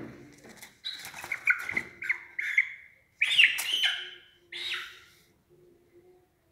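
A chicken squawking and crying out in short, high-pitched calls, about six of them, while it is held down by hand to have a swollen eye treated. A knock from handling comes right at the start.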